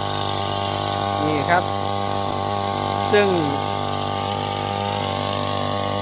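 Motorized crop sprayer running at a steady, even hum while weed killer is sprayed from its wand onto weedy grass in a rice paddy.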